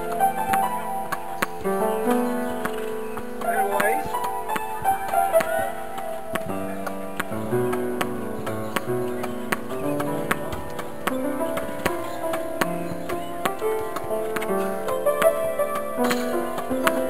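Slow improvised piano music, held notes and chords changing every second or so, over a run of sharp clicks from a ball struck against the racket and practice wall several times a second.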